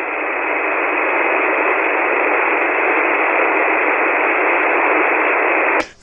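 Steady hiss of a ham radio receiver tuned to a 40-metre single-sideband channel with no station transmitting, the noise held within the narrow voice band. It swells slightly over the first second. It is the dead air of a called station that has not answered.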